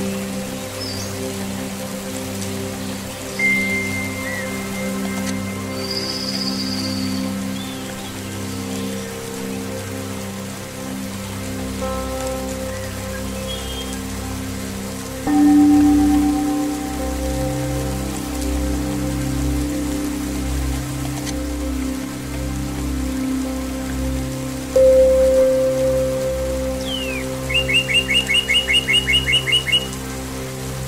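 Calm zen music of long, ringing tones, with new tones struck about 3, 15 and 25 seconds in, over steady rain. Birds chirp now and then, and near the end a bird gives a fast trill of about five notes a second.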